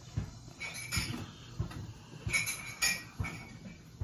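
A pencil drawing freehand on paper: a few short scratching strokes and light taps at irregular intervals as small arcs are sketched.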